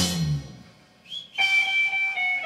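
Live rock band with drum kit and bass stops together, the last hit ringing out and dying away within half a second. After a brief quiet gap, a lone electric guitar comes in with a single high, sustained note.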